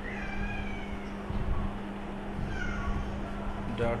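Two drawn-out animal cries in the background, each falling in pitch, one at the start and one about two and a half seconds in, over a steady low hum.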